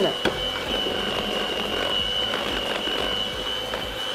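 Electric hand mixer running steadily with a constant high whine, its beaters creaming ghee and powdered sugar in a glass bowl.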